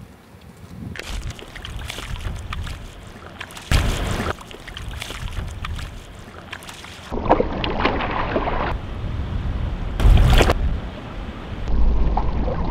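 Footsteps crunching on river gravel, then splashing and sloshing as a person wades into shallow river water, with wind on the microphone. Near the end the sound turns to a low steady rumble.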